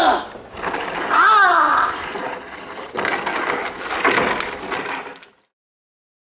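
Boys' voices grunting and crying out with effort, two strained calls that rise and fall in pitch within the first two seconds, then rougher voices; the sound cuts off suddenly a little after five seconds.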